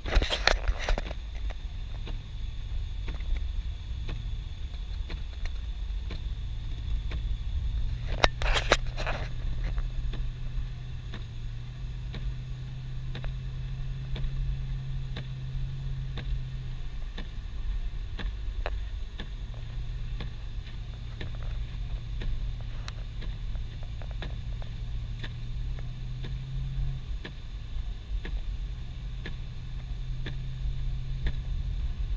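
Car cabin while driving slowly on a snow-covered road: a steady low engine hum and road rumble, the hum stepping up and down a little in pitch. There are brief sharp clatters right at the start and again about eight and a half seconds in, and faint scattered ticks.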